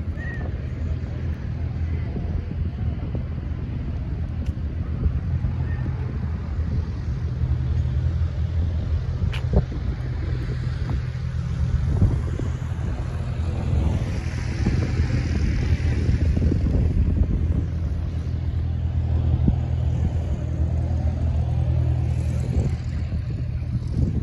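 Steady low rumble of an engine running, with a few faint knocks.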